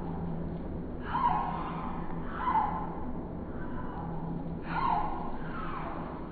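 A bird calling three times, short arching calls about a second in, at two and a half seconds and near the end, over a steady low hum.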